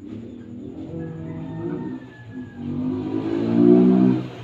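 A motor vehicle's engine, growing louder over the few seconds with a brief dip partway through, as if drawing near.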